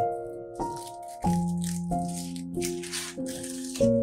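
Instrumental background music playing a slow melody, over irregular crinkling of the foil wrapper as a chocolate bar is unwrapped.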